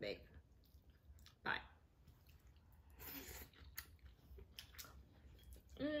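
A person chewing a mouthful of stir-fried rice noodles, faint with soft wet mouth clicks.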